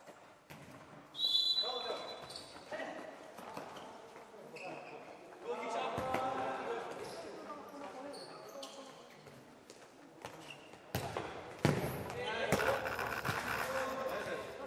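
Futsal ball being kicked and striking a hard indoor sports-hall floor, irregular sharp thuds ringing in the large hall, with players shouting.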